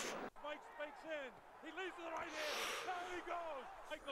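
Faint speech played at low volume, with a single sharp click about a third of a second in.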